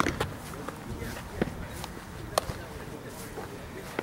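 A few sharp pops of a baseball being caught in a leather glove, the loudest right at the start and two more about a second and a half and two and a half seconds in, over faint distant voices and outdoor rumble.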